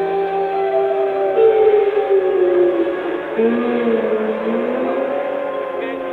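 A live psychedelic rock band plays a slow, droning instrumental passage. Several sustained tones slide up and down in pitch against one another, with no drum beat.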